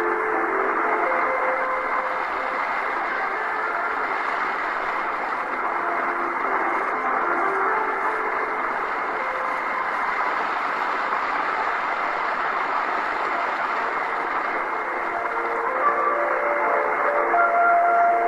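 A distant shortwave AM broadcast on 11650 kHz heard through an Eton Satellit receiver. The station's music sinks into hiss and static through the middle as the signal fades, then comes back clearly near the end. A faint steady whistle sits under it all.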